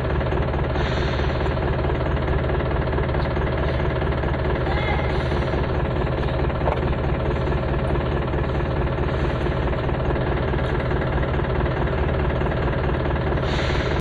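A motor vehicle's engine idling steadily, with a dense, even rattle.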